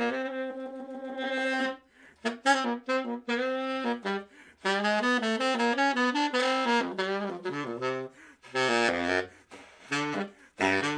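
Baritone saxophone playing a slow melodic line live: a long held note, then short phrases broken by brief pauses for breath, dropping into low notes near the end.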